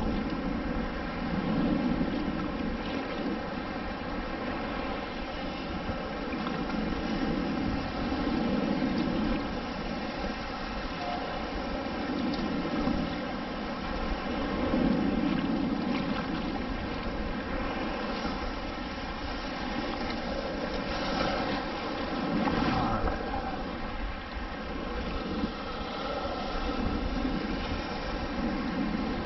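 Choppy shallow surf sloshing around a wader's legs, with wind buffeting the microphone; the rush swells and fades every few seconds over a faint steady hum.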